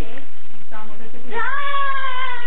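A girl's high-pitched voice, wordless and cat-like, holding one long wavering wail that starts about a second and a half in, after a brief vocal sound.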